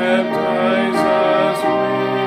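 A hymn sung in slow, long-held chords with instrumental accompaniment.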